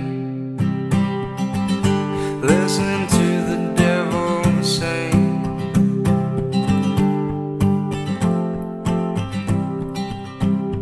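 Steel-string acoustic guitar strummed in a steady rhythm, chords ringing between the strokes.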